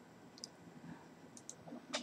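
Quiet room tone with a few faint, short clicks: one about half a second in and two close together around a second and a half in.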